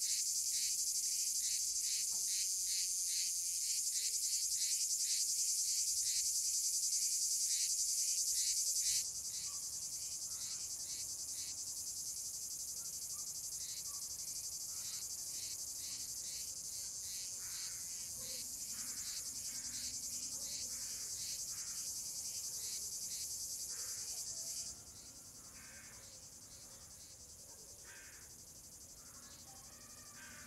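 A steady, high-pitched chorus of insects with a fine pulsing texture. It drops abruptly in level about nine seconds in and again near the end, with a few faint short calls over it in the later part.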